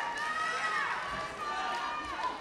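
Several high-pitched voices shouting long calls that rise and fall, over the general noise of a sports hall.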